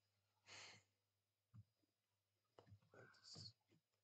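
Near silence: a few faint computer keyboard keystrokes and a soft exhale about half a second in.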